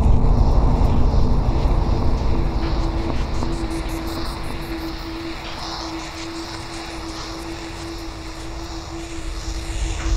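Dark ambient fantasy music: a deep rumbling drone with a single held note over it, fading down through the middle and swelling back up near the end.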